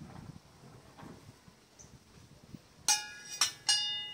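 Polished metal boat propellers knocking against each other as they are set down among others: three sharp clinks near the end, each ringing on with a bell-like tone.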